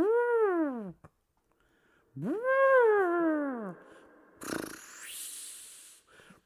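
A cat meowing: two long, drawn-out meows, each rising and then falling in pitch, the second starting about two seconds after the first. A breathy burst follows near the end.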